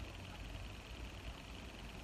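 Beer pouring from a keg tap into a pint glass: a faint, steady hiss.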